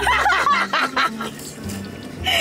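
A woman laughing for about a second and then trailing off, with background music under it.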